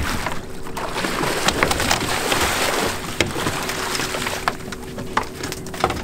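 Water splashing and sloshing at the hull as a hooked cobia is netted beside the boat, heaviest in the first three seconds, with sharp knocks of the net and gear against the boat. A steady low hum runs underneath.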